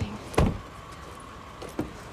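A sedan's rear door slammed shut once with a thump about half a second in, followed by a fainter knock near the end.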